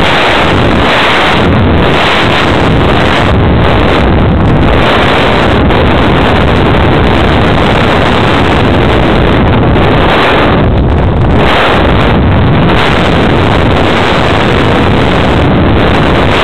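Loud, steady rush of airflow buffeting the microphone of a mini camera mounted on a flying-wing glider in flight.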